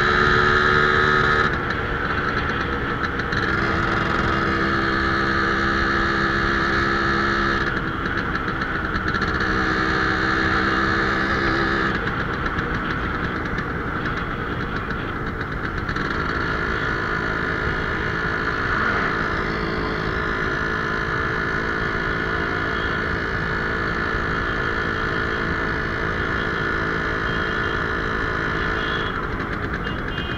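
Yamaha motorcycle engine running under the rider, heard from on the bike, its note changing pitch several times as it is throttled and shifted through the gears.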